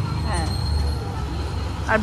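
Low steady rumble of street traffic, swelling briefly about half a second in, under faint nearby voices.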